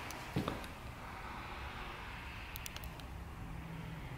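Quiet indoor room tone with a steady low rumble, broken by two soft knocks about half a second in and a few faint clicks near the middle.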